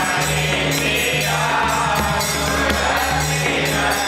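Samaj Gaayan: a group of men singing a Dhrupad-style Vaishnava devotional song together, accompanied by a hand-played pakhawaj drum and the steady jingling clash of jhaanjh hand cymbals.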